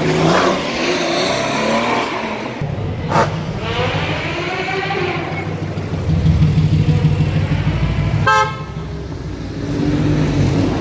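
Supercar engines as the cars drive past close by one after another, their pitch rising and bending as each goes by. The loudest part is a deep exhaust rumble from about six seconds in. It stops with a brief toot near the end.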